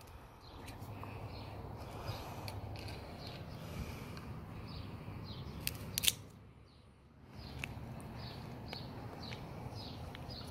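Scissors snipping through the stems of echeveria pups: small clicks here and there and a loud pair of sharp snips about six seconds in.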